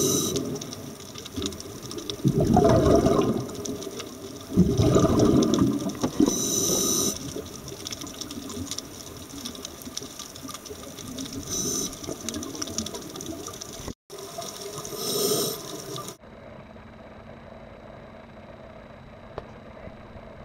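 Scuba breathing heard underwater: bursts of exhaled bubbles every few seconds, with short hissing inhalations through the regulator between them. About 16 seconds in, the sound cuts off abruptly to a quiet steady hum.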